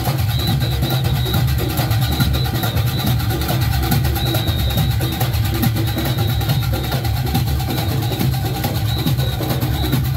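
Junkanoo band playing live: goatskin drums beating a steady, dense rhythm under fast clanging cowbells, with a high shrill whistle note coming and going.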